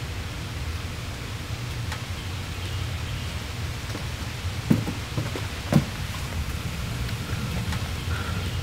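Two footsteps on wooden deck stairs, about a second apart a little past the middle, over a steady hiss with a low rumble.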